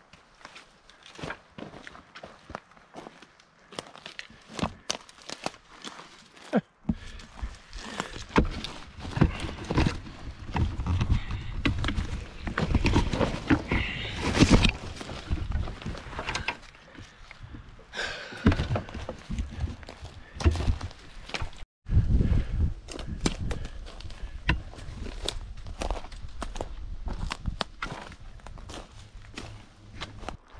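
Footsteps on a dry forest floor littered with sticks and deadfall: irregular crunches, snaps and knocks as a hiker picks his way downhill. From about seven seconds in, wind buffets the microphone with a low rumble.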